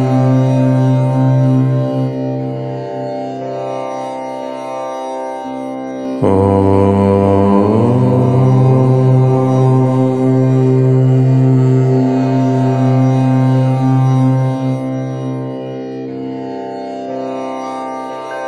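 Chanting of the syllable Om in a low voice, each Om held long and running on into the next. A fresh, louder Om begins about six seconds in, its vowel closing over the next couple of seconds, and it eases off near the end.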